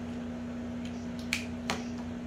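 A child snapping his fingers: two sharp snaps about a third of a second apart, past the middle, with a few faint ticks just before.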